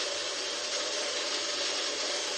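Kitchen coffee machine running with a steady, even grinding whir.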